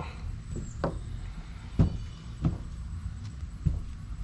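Light knocks and clicks of hand tools and small parts being handled on a workbench, about four scattered taps with the sharpest about two seconds in, over a low steady hum.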